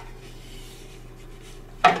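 Faint rubbing and handling noise as the phone camera is moved closer over the board, over a steady low hum. A woman's voice comes in near the end.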